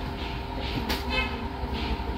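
A steady background hum, with a brief rustle of fabric about a second in as clothing is handled.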